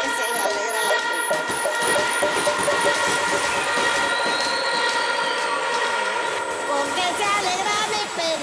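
House music playing from DJ decks: sustained synth chords with a vocal line over them. A high repeating tick speeds up and fades out over the first few seconds.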